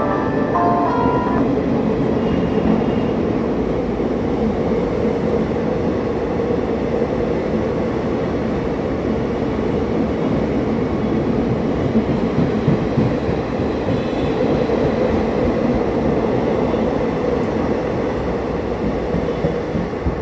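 ICF passenger coaches of an express train rolling past at speed, a steady rumble of steel wheels on the rails with a few sharper clacks about twelve seconds in.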